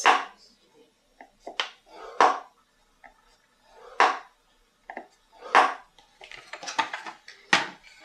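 A bone folder drawn along the grooves of a scoring board, scoring cardstock: about six short, sharp scraping strokes, a second or two apart, with a quick flurry near the end.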